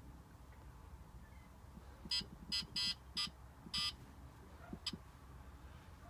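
Bartlett 3K kiln controller's keypad beeping as its buttons are pressed. Five short electronic beeps come about two to four seconds in, a fraction of a second apart, then a fainter one near five seconds, over a faint low hum.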